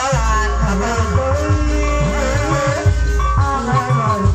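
Live Sundanese gamelan ensemble music: a wavering melodic line over drum strokes that slide in pitch and a steady bass.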